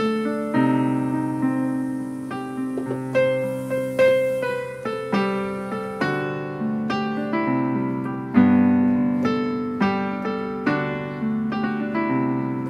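Digital keyboard played with a piano sound: a slow melody over chords, each note struck and then fading.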